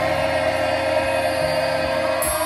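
A man sings one long steady note over a strummed acoustic guitar, in a live concert.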